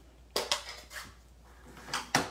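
A sharp plastic clack about a third of a second in, then quiet handling, with a rustle and another clack near the end: a hard plastic stamp ink pad case being set out and opened on a craft desk.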